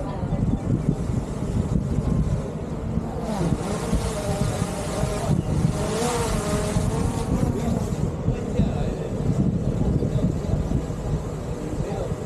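DJI Mini 4 Pro quadcopter's propellers buzzing as it flies overhead, growing louder and wavering in pitch around the middle as it passes closest, over heavy wind rumble on the microphone.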